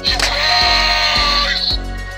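Battery-operated animated skeleton decoration set off by its try-me button, playing a loud electronic sound clip that starts at once and cuts off after about a second and a half.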